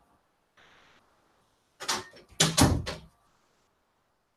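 A quick run of loud knocks and clattering bumps about two seconds in, lasting around a second, with a faint hiss shortly before.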